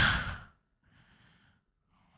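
A man's voice trailing off at the end of a word, followed about a second in by a faint, breathy exhale.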